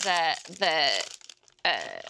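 Foil wrapper of a trading card pack crinkling and tearing as hands rip it open, beneath talk.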